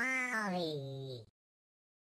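WALL·E robot voice giving one drawn-out, meow-like "whoa" that slides down in pitch and stops a little over a second in.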